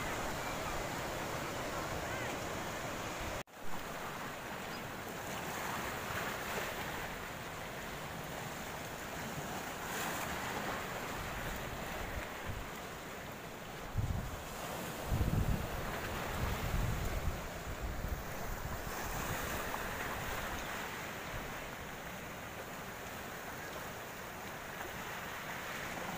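Floodwater and waves washing steadily through a breached embankment, with wind gusting on the microphone, strongest about fourteen to seventeen seconds in. The sound drops out for an instant about three and a half seconds in.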